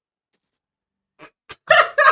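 Near silence, then about a second and a half in a man bursts out in a short, loud laugh.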